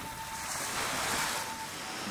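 Small waves washing onto a sandy beach: a steady rush of surf that swells about a second in and eases again.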